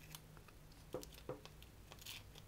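Faint clicks of pliers handled against thin copper wire, twice, a fraction of a second apart, over a low steady hum; otherwise near silence.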